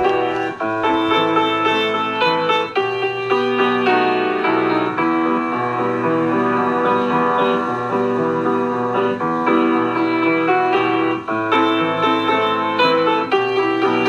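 Keyboard instrument playing a slow, improvised prelude in sustained chords with a melody line above, the notes changing every second or two.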